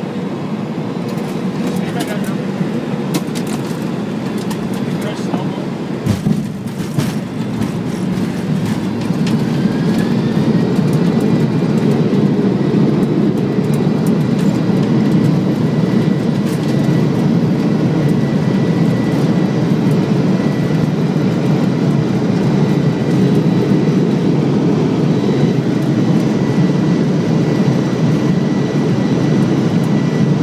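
Airliner heard from the cockpit on its landing rollout: a steady roar of engines and runway noise, with knocks and rattles in the first few seconds. About ten seconds in the noise grows louder and a rising engine whine settles into a steady high tone.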